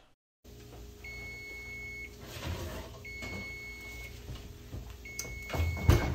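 Kitchen oven timer beeping: three long, even beeps of about a second each, two seconds apart, the signal that the bake time is up. The beeps sound over a steady low hum, with a knock near the end.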